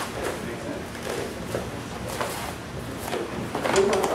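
Indistinct talking among several people in a small practice room, mixed with scattered soft knocks and rustles of people moving on the mats.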